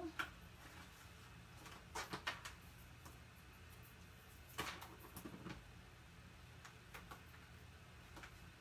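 Faint handling noises from double-sided adhesive tape being applied to a small paper box: a few soft rustles and taps about two seconds in, and again around four and a half to five and a half seconds.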